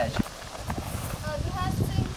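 High-pitched child voices calling briefly in the second half, over irregular low thuds and rumble.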